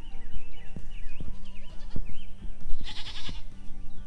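A goat bleating once, briefly, about three seconds in, over background music.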